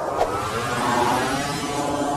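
Engine-like spaceship sound effect for a LEGO spaceship model flying off: a loud, dense, steady rush that starts abruptly.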